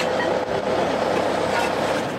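Steady mechanical din at a construction and demolition site, a dense even noise with no clear knocks standing out.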